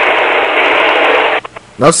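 A loud, even burst of static-like hiss, thin and radio-like, that cuts off suddenly about a second and a half in.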